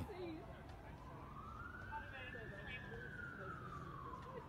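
Faint siren wailing slowly: its pitch falls, rises over about two seconds and falls again, with faint voices in the background.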